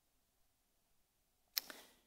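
Near silence in a quiet room, broken about a second and a half in by a single sharp click and a brief faint sound after it.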